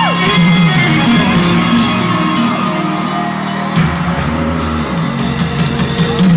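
Loud live band music with electric guitar, played over an arena sound system and recorded from the audience. Right at the start a high note slides steeply down in pitch.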